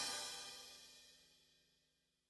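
The final chord of a tecnobanda song ringing out and fading to near silence in under a second.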